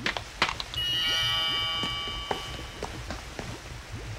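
Sparkling chime sound effect: about a second in, several high bell-like tones come in one after another, ring together for about two seconds and fade. A few light clicks come before and after.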